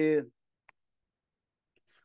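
A man's speech trails off, then near silence with a single faint click about two-thirds of a second in.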